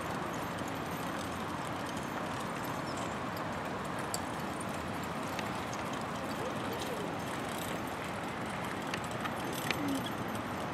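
Pair of carriage horses moving across a dirt arena while pulling a four-wheeled carriage: faint hoofbeats and wheel noise under a steady background hiss.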